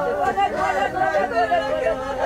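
Several women's voices overlapping at once, raised in high, drawn-out mourning cries at a funeral.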